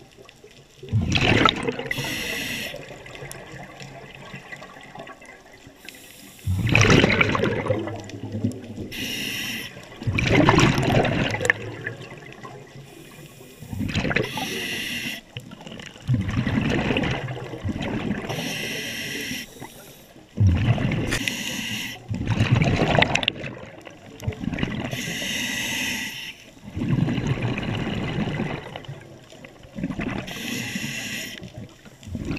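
Scuba diver breathing through a regulator underwater: a hissing inhale, then a loud gush of exhaled bubbles, repeating about every four seconds.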